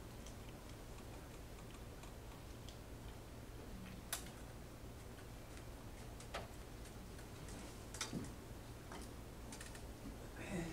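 Quiet room with a steady low hum and a few scattered light clicks, about four, spread irregularly through the pause.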